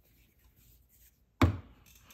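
Faint handling noise, then one sharp knock about one and a half seconds in, followed by a few lighter clicks, as the epoxy pump bottles are handled and set down on the bench.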